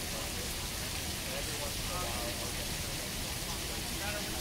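Steady rushing hiss of falling water, like a fountain, with faint distant voices murmuring through it.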